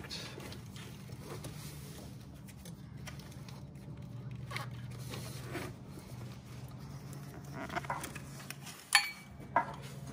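Hands snaking a part and hose back down into a diesel truck's crowded engine bay: faint rubbing and scraping against hoses and a shop towel, with two sharp knocks near the end. A steady low hum runs underneath.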